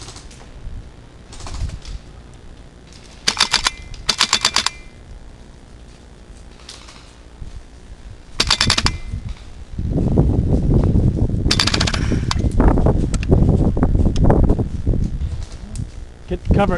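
Airsoft rifle firing four short full-auto bursts of rapidly clattering shots: two close together a few seconds in, one about halfway, and a fourth near the end. From about two thirds of the way in, loud low rustling and bumping runs under and past the last burst.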